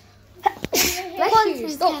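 A boy sneezing: a sudden sharp burst a little under a second in.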